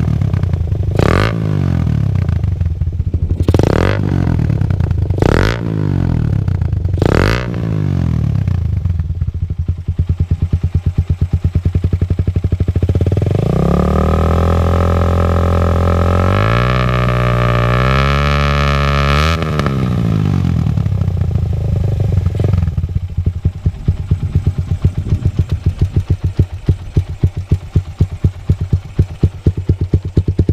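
Suzuki Satria F150 (carburettor model) single-cylinder four-stroke engine breathing through a LeoVince GP Corsa carbon full-system exhaust. It is blipped six times in quick succession, then held at high revs for about six seconds and let drop back to an even, pulsing idle. The note is bassy and dense with a slight rasp, with a burble as the throttle is released.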